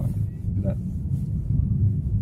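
Steady low rumble of a car driving, heard from inside the cabin: engine and road noise while the car is under way.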